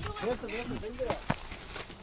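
Faint, quiet talk from a man's voice, with a few sharp clicks, the clearest a little over a second in.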